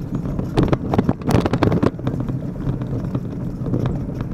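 Road traffic with wind buffeting the microphone, and a run of short knocks, thickest from about half a second to two seconds in.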